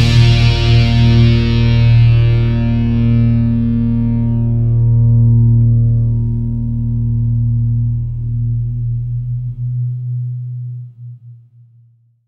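Final chord of an alternative metal song ringing out on distorted electric guitar with effects: the band stops, and the held chord slowly dies away to silence near the end.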